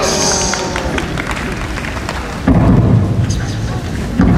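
A man's Japanese speech through a microphone and public-address system in a large echoing hall, booming and muffled, with a loud low boomy stretch from about halfway through.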